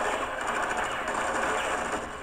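A loud, steady, rapid mechanical rattle that starts abruptly, heard from the TV episode's soundtrack.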